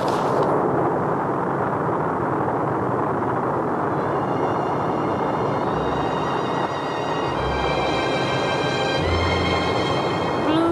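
Saturn V rocket lifting off: a steady, dense roar of its engines. Music with long held notes fades in over it about four seconds in and swells, with more notes joining near the end.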